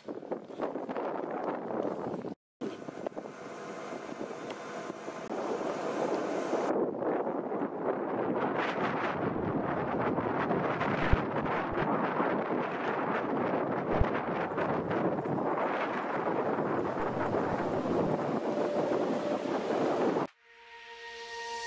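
A freight train of tank wagons hauled by a locomotive approaching and rolling through a station, its wheel-on-rail noise growing louder and then holding steady, with two sharp knocks from the wheels about halfway through. Wind buffets the microphone. A brief rush of noise from a moving passenger train comes first, cut off about two seconds in.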